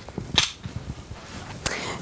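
Waist-belt buckle of a Beco Gemini baby carrier being clipped shut behind the back: a sharp plastic click about half a second in and a second click near the end, with light rustling of the belt between.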